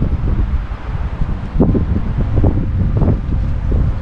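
Wind buffeting the microphone: a loud, gusting low rumble, with some rustling.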